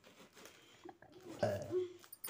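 Faint rustling and tearing of hands pulling apart the fibrous flesh of a ripe jackfruit, with a short low vocal sound about one and a half seconds in.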